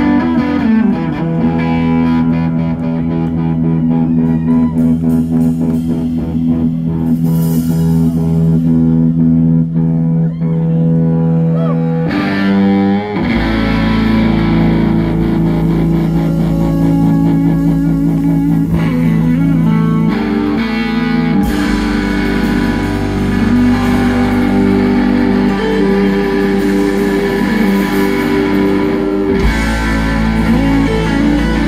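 Live blues-rock played loud: an electric guitar plugged straight into an amplifier turned up to 10, over drums, with the band filling out and a heavy bass coming in about thirteen seconds in.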